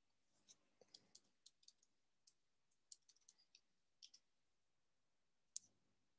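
Faint, irregular clicking at a computer: about fifteen light clicks over the first four seconds, then a sharper click near the end.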